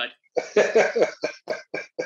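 A man laughing after a joke: a run of short pitched bursts that starts about a third of a second in and grows shorter and more spaced.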